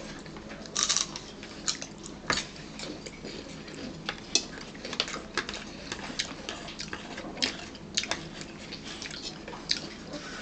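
Raw celery being bitten and chewed up close: an irregular run of crisp, wet crunches, several a second, with the sharpest about a second in, near the middle and around three quarters of the way through.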